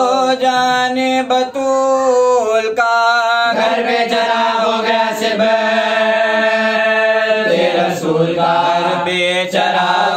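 A solo voice chanting an Urdu marsiya (Shia lament) in a long, drawn-out melodic phrase: held notes that bend and turn in pitch, without clear words.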